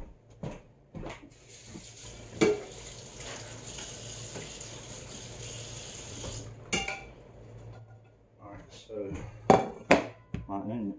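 Kitchen clatter: several sharp clinks and knocks of dishes and utensils, the loudest about two and a half seconds in and again near the end. Between them a steady rush of water from a tap runs for about five seconds, switching on and off abruptly.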